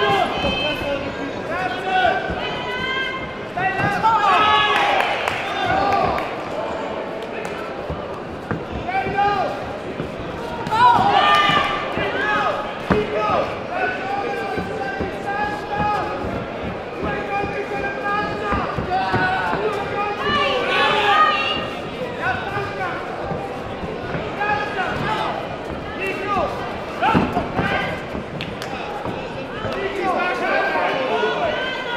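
Voices shouting and calling out in a large hall throughout, with repeated sharp thuds and slaps from the kickboxers' kicks, punches and footwork on the mats.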